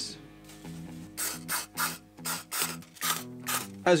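Aerosol intake cleaner sprayed through its straw into a starter motor's casing in a run of short hissing bursts, about three a second, beginning about a second in.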